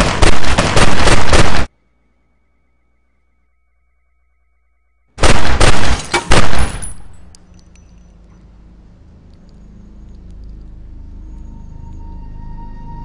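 Two volleys of pistol fire, each several shots in quick succession. The first volley cuts off abruptly about a second and a half in. After a few seconds of dead silence, the second volley starts about five seconds in and lasts about two seconds.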